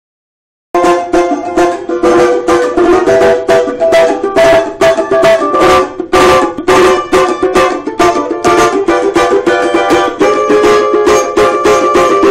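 Marquês Brazilian banjo with an acrylic body, strummed in quick, even strokes through changing chords. The playing starts abruptly about a second in.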